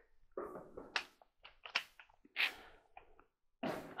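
A wooden hand-screw clamp being adjusted by hand: a few short creaks, clicks and rustles as its two threaded handles are turned.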